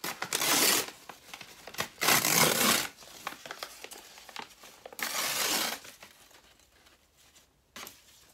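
Packing material around a shipped potted plant crinkling and rustling as it is handled, in three bursts of under a second each.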